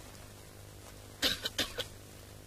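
A person coughing: three short coughs in quick succession, a little over a second in, over a faint steady low hum.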